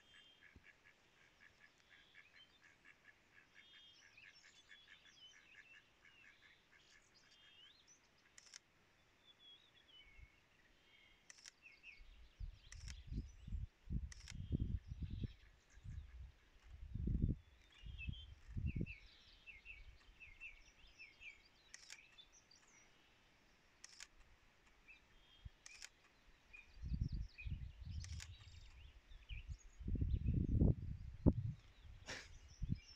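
Small songbirds singing repeated trills, with single camera shutter clicks every couple of seconds. Low rumbles on the microphone come in the middle and again near the end.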